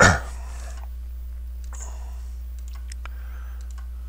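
A cough at the very start, then a few faint computer mouse clicks over a steady low electrical hum.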